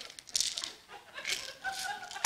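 Soft scratchy rustling as a small handheld object is picked up and handled at a wooden pulpit, in a few short bursts.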